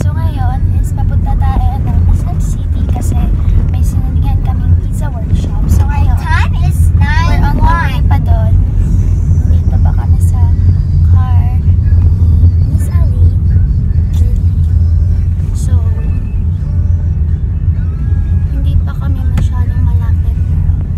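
Steady low rumble of a car on the move, heard inside the cabin, with voices over it.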